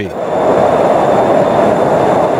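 Jet noise from an F-16 fighter in flight: a steady rushing sound that swells over the first half-second and then holds level.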